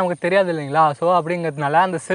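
Speech: one person talking steadily, lecturing.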